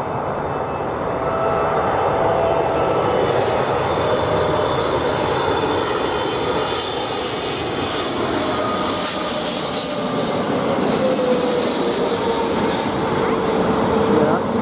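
Twin-engine widebody jet airliner on final approach with its landing gear down, passing low overhead: a loud, steady jet roar with a whine that slowly falls in pitch as it goes by.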